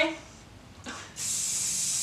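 Aerosol hairspray can spraying onto a dog's foot coat: a short faint puff about a second in, then one steady hiss lasting about a second.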